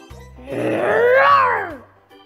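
A cartoon dinosaur roar sound effect for the stegosaurus mascot: one growling call about a second and a half long that rises then falls in pitch. It sits over a light organ jingle.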